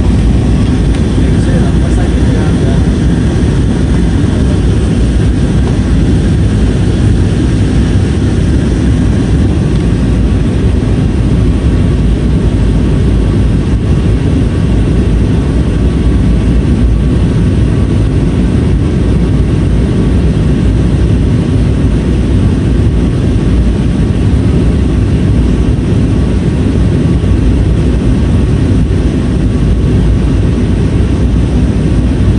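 Steady cabin noise of a jet airliner descending on approach: a constant loud rush of engine and airflow, heaviest in the low end.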